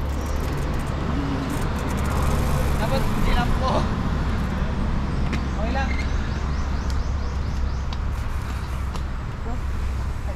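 Indistinct talk among people, too faint or muffled for words, over a steady low rumble.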